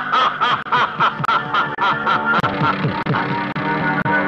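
A man laughing theatrically in quick repeated bursts, a villain's laugh, over a dramatic film score that carries on steadily under and after it.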